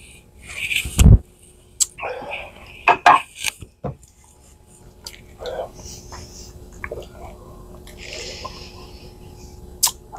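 Two men knocking back a shot of bourbon from small tasting glasses: breathy exhales, lip-smacking and low murmurs after swallowing. Several short sharp clicks of the glasses being set down on the wooden bar top come in the first few seconds, the loudest about a second in.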